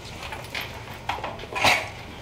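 Sheets of paper being handled and shuffled on a table, in a run of short rustles and scrapes, with one louder scrape about three-quarters of the way through.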